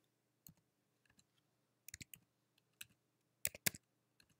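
Faint computer keyboard keystrokes as a short answer list is typed, Enter and number keys in turn: a single click, a quick cluster of three near the middle, then a quicker, louder run near the end.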